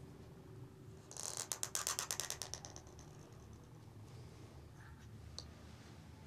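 Calligraphy pen scratching on paper: a quick run of short rasping strokes lasting about a second and a half, starting about a second in, then a faint single click near the end.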